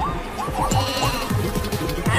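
Background music with a crowd of animal calls over it, short calls rising and falling in pitch several times a second, over a run of low thuds.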